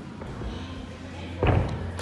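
A single heavy thud about one and a half seconds in: a gymnast's feet landing a flip on a padded gymnastics floor.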